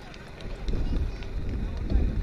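Open-air ambience: low wind rumble on the microphone with faint distant voices.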